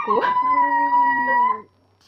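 A woman's high-pitched whining squeal, one steady held note lasting about a second and a half that cuts off suddenly, made in mock dismay.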